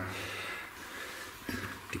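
Quiet workshop room tone with faint handling noise and a few light knocks about one and a half seconds in.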